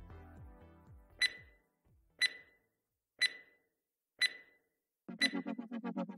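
Quiz sound-effect countdown: five short, high ticks about a second apart, after the tail of the background music fades away. Near the end a faster ticking over a low buzz begins as the timer starts.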